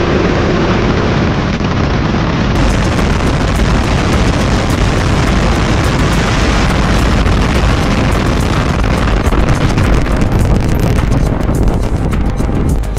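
Rocket engine roar of a SpaceX Starship Super Heavy booster's Raptor engines lifting off, loud and continuous, with sharp crackling growing over the last few seconds.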